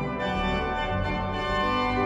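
Hauptwerk virtual pipe organ playing a hymn tune in sustained chords over a moving pedal bass.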